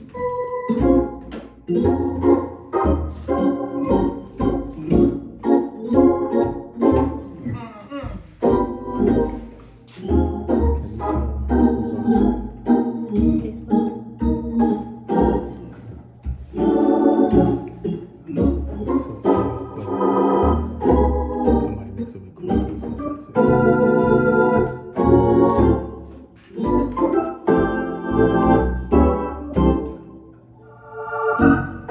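Hammond organ playing jazz: chords with sharp key attacks over low bass notes.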